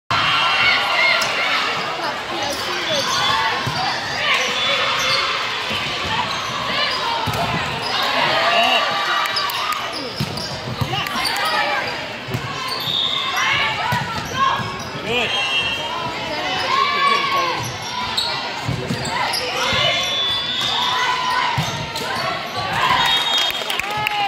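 Indoor volleyball play in a large echoing gym: players and spectators shouting and calling out, with repeated sharp smacks of the ball being hit and landing.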